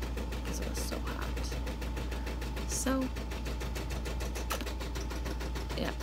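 Computerized embroidery machine stitching out a design, its needle going in a rapid, even rhythm of several strokes a second.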